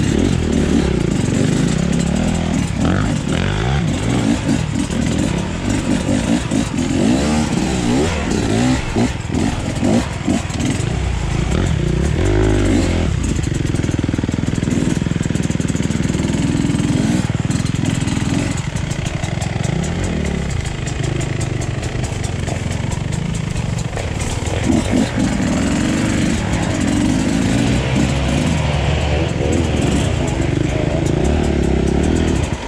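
Dirt bike engines at low speed, close to the microphone. The revs rise and fall over and over as the throttle is worked on and off over rough trail ground.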